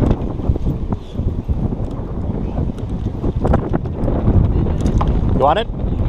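Wind buffeting the camera microphone, a steady low rumble, with a few light knocks and a brief voice near the end.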